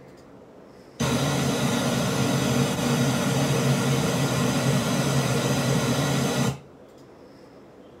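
Steady hiss of TV static noise, starting abruptly about a second in and cutting off suddenly about a second and a half before the end.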